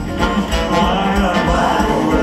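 Live band music with a steady beat, and a man and a woman singing a duet over it.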